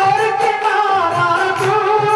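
A man singing a Hindu devotional bhajan into a microphone, with instrumental accompaniment and a steady drum beat.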